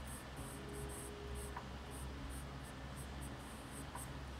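Pencil sketching on paper: a run of short, light strokes, about three a second, as an eyebrow is drawn in.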